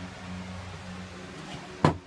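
A steady low hum, with one sharp knock near the end.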